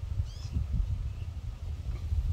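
Low, rough rumble of wind on the microphone outdoors, with a short high chirp about half a second in.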